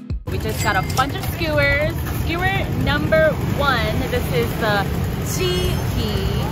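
Busy street noise with a steady rumble of traffic and the voices of nearby people talking, which begins as background music cuts off right at the start.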